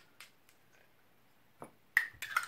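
A few light clicks of a small glass whisky sample bottle with a metal screw cap being handled and turned in the hands, with a sharper click near the end.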